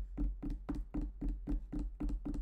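Rapid, even tapping, about six sharp knocks a second, each with a hollow ring.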